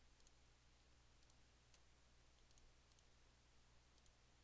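Near silence: a low steady hum with a few faint computer-mouse clicks as nodes are picked on screen.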